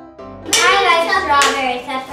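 Soft background piano music, then about half a second in a child's loud, high voice cuts in, sliding up and down in pitch with no clear words, with one sharp tap about one and a half seconds in.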